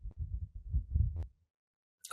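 Low, muffled thuds and rumble for just over a second, with a faint click near the end, then silence.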